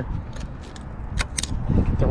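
A steel snap ring held in snap-ring pliers clicking against the end of a planetary axle shaft as it is fitted into its groove: a handful of light, sharp metal clicks.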